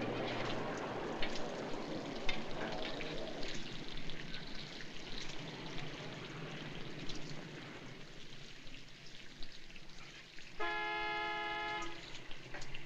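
Street background on an old film soundtrack: a steady hiss with scattered clicks. Near the end a car horn sounds once, a steady multi-tone blast lasting just over a second.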